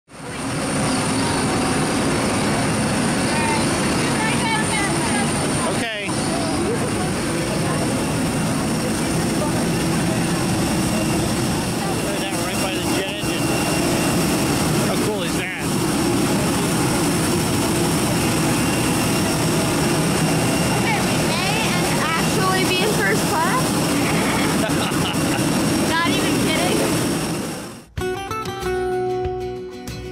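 Jet airliner noise on an airport apron: a loud, steady high whine over a broad rumble, with voices faintly through it. It cuts off suddenly about two seconds before the end, and acoustic guitar music takes over.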